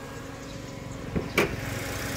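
Toyota Avanza Premio's 1.5-litre four-cylinder engine idling steadily. Two sharp clicks come about a second and a half in as the bonnet's safety catch is released and the bonnet lifted.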